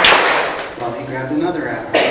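The tail of an audience's group taunt for the bird: a short noisy burst right at the start, then lower voices and murmuring, with another sharp burst near the end.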